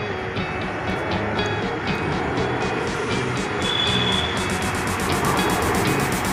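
Steady traffic noise with music playing underneath.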